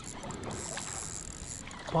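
Fishing reel being cranked in spells while a hooked sea bass is played on the line: a thin, steady high whine that stops and starts, over low wind and water noise.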